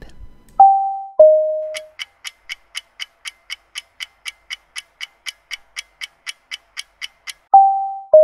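A two-note descending chime, then a clock ticking quickly at about four ticks a second for some five seconds, then the same two-note chime again near the end. These are edited-in sound effects marking time passing.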